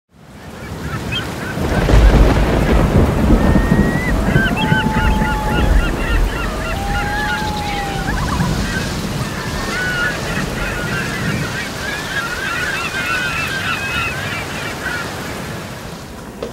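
A deep rumble, loudest about two seconds in and easing off gradually, under many birds calling over each other.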